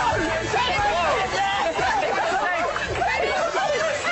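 Several voices talking excitedly over one another in lively group chatter.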